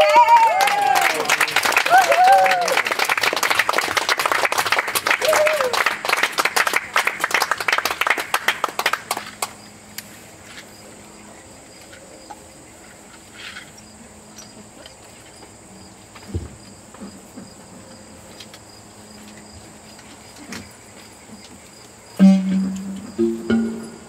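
Audience applauding and cheering, with a few whoops near the start, the clapping thinning out and dying away after about nine seconds. After that, a faint steady chirring of insects with occasional shuffling and a single thump.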